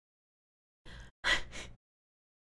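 A woman's breathing: two short breathy sounds about a second in, the second one louder and longer, with dead silence before and after them.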